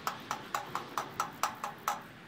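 Rear wheel's freewheel ratchet clicking in an even run of quick ticks, about five a second, as a rag worked back and forth between the cogs turns them.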